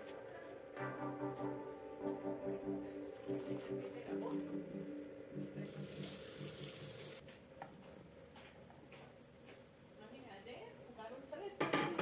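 Background music for the first five seconds or so. Then a kitchen tap runs into a stainless steel sink for about a second and a half as hands are rinsed, and is shut off suddenly. A short loud burst comes near the end.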